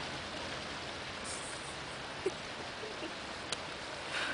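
Steady rushing hiss of outdoor background noise, with two faint ticks in its second half.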